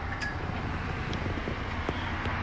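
A steady low hum inside a car's cabin, with a few faint clicks.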